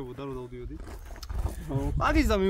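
Men talking in conversation. One man holds a low, drawn-out vocal sound for under a second at the start, and speech picks up again near the end.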